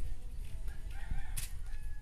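A rooster crowing faintly, one drawn-out call over a steady low rumble, with a sharp click about one and a half seconds in.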